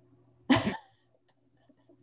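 A single short cough about half a second in.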